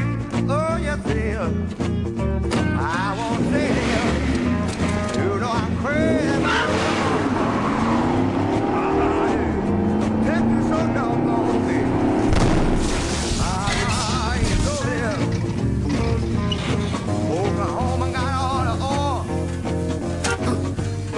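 A background song with a singer runs throughout. About halfway through, a Pontiac Fiero's engine revs with rising pitch and its tyres squeal in a burnout.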